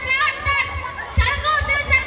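Many children's voices chattering and calling out at once, close by, with no single clear speaker.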